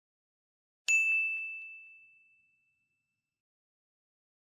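A single bright bell ding, the sound effect of a notification bell being switched on, struck once about a second in and ringing out as it fades over a second or two.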